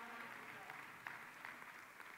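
Faint scattered applause from a congregation in a large hall, slowly dying away.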